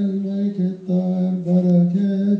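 Coptic liturgical chant: a slow melody sung in long held notes, with brief breaks between phrases.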